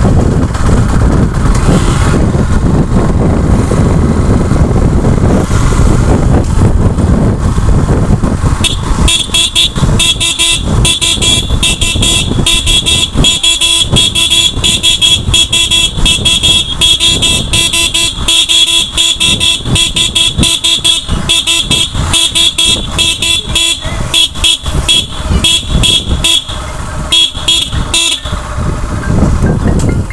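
Motorcycle riding along a road, its engine and wind rumbling on the microphone. From about nine seconds in, a horn sounds in rapid, repeated blasts for some twenty seconds and stops near the end.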